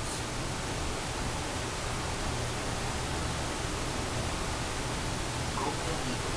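A steady, even hiss with no distinct events in it.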